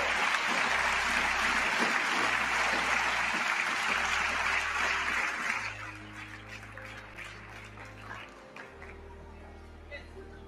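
Applause from a large assembly hall, a dense burst of clapping that holds for about five seconds and then thins out into scattered individual claps. A low background music bed runs underneath.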